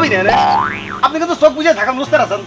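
A comic cartoon sound effect: a whistle-like tone that glides up and then back down, lasting under a second, followed by speech.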